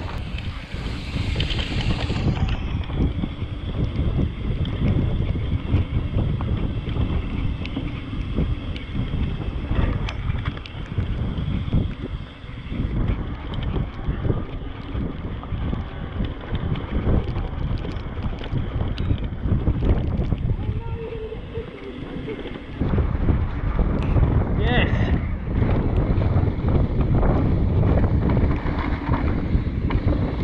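Wind buffeting the microphone of a bike-mounted action camera as a mountain bike rides fast down a dirt trail, with scattered rattles and knocks from the bike over rough ground.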